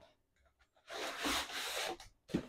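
Packaging rubbing and scraping as an item is pulled out of a shipping carton: a rough rubbing noise starting about a second in and lasting about a second.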